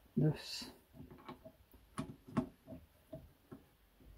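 Metal clicks and knocks from a lathe's three-jaw chuck as its chuck key is turned to clamp a copper disc in the jaws, about half a dozen separate strokes. A brief vocal sound comes just after the start.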